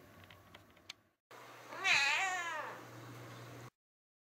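A domestic cat gives one meow about a second long, its pitch wavering up and down before falling away.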